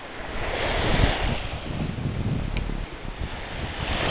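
Small waves breaking on a sandy shore, with wind rumbling on the microphone. The wash of surf swells louder about a second in.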